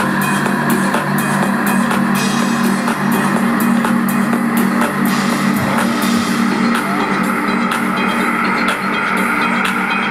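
Live dance music from a band with congas, drum kit and guitar, played loudly over a PA: a steady percussive beat under a held chord, with little deep bass in this passage.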